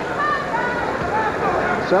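Arena crowd noise: a steady murmur with scattered voices calling out.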